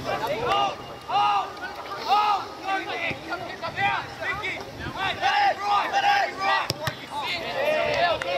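Several voices shouting and calling out in short bursts across a football pitch, overlapping one another. Two sharp knocks come close together about two-thirds of the way through.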